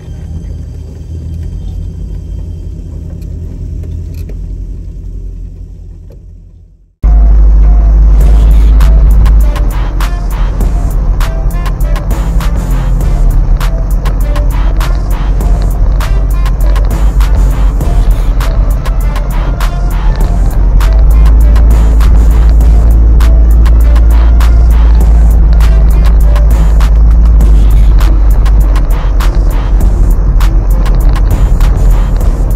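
Background music fades out over the first six seconds or so. About seven seconds in, a sudden cut brings in loud sound from inside the cab of a Toyota off-road pickup on a rough dirt track: a heavy low rumble with constant rattling.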